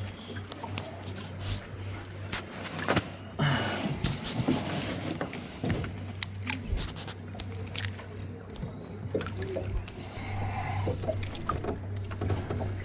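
Light water splashes and knocks against a small boat's hull as a large trahira is lowered back into the water on a metal lip grip, over a steady low hum.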